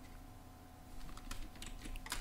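Faint computer keyboard keystrokes: a few light clicks starting about halfway through, as a key shortcut (Shift+Ctrl+A) is typed.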